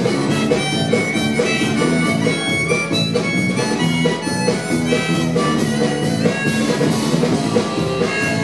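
Live band instrumental break: a harmonica solo of held, wailing notes over strummed acoustic guitar, bass and a steady drum beat.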